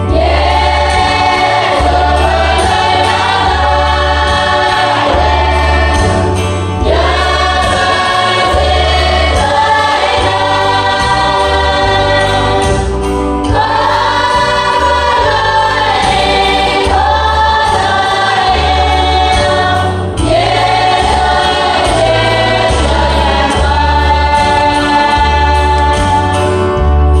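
A large women's choir singing a hymn in unison phrases that break for a breath about every six to seven seconds. It is carried over an accompaniment with a regular, pulsing low bass.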